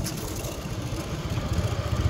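Motorcycle engine running at low revs while being ridden, with a steady low pulsing that grows a little louder near the end.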